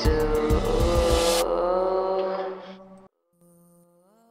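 The instrumental end of a trap song: a beat with rapid hi-hats, deep bass and a sustained melody, with no vocals. The hi-hats stop partway through, and the music fades out about three seconds in. A faint held tone then starts.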